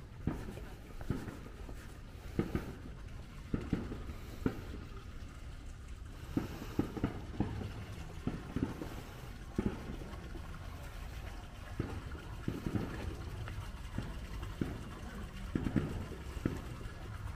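Footsteps of someone walking at an even pace on stone paving, a short scuff or tap roughly every half second to a second, over a steady low background rumble.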